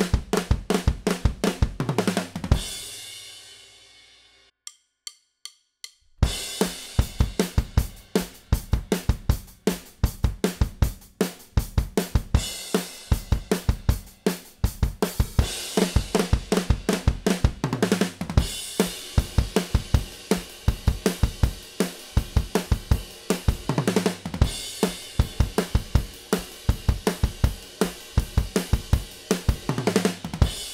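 Acoustic drum kit playing a fast punk/hardcore beat with fills: kick, snare, toms, hi-hat and cymbals. The playing stops about two and a half seconds in and the cymbals ring out. After a short gap with a few evenly spaced clicks, the kit starts again about six seconds in and keeps going.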